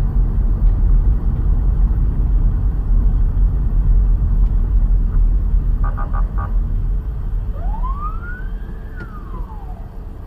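Loud, steady low rumble of a moving car, as picked up by a dash cam inside it. About six seconds in come four short beeps, and near the end a single wailing tone rises and falls once.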